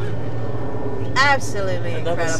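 A woman's voice, heard briefly about a second in, over the steady low drone of a motorboat running on the water.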